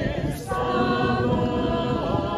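Voices singing a hymn, holding one long note from about half a second in.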